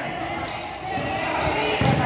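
Court noise of a basketball game on a hardwood gym floor: players running and a basketball bouncing, with a heavier low thud near the end.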